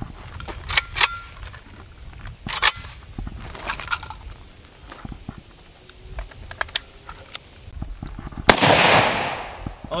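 A few sharp metallic clicks as the Saiga rifle is handled, then about eight and a half seconds in a single shot from the Saiga semi-automatic rifle in 7.62×39, the loudest sound, ringing out for about a second.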